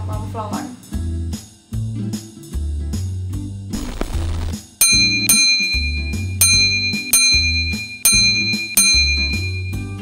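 Background music with a steady beat and bass line. About four seconds in, a rushing swell leads into bright, ringing bell-like notes struck roughly twice a second over the beat.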